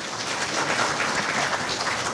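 Audience applauding, swelling over the first half second and then holding steady.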